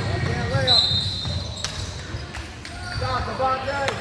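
A basketball bouncing on a hardwood gym floor during play, with players and spectators shouting in the hall's echo. A brief high squeak comes about a second in.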